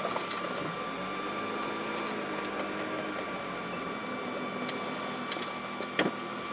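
Car engine running as the car pulls away slowly, heard from inside the cabin, with a thin steady whine above it and a few faint ticks.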